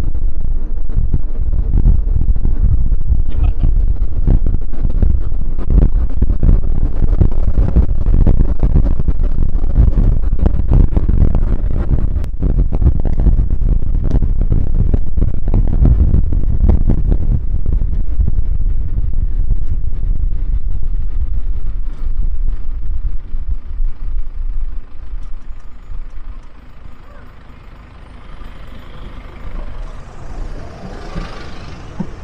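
Loud low rumble of a 4x4 on the move, road and engine noise heard from on board the vehicle, dying down over the last few seconds as it slows.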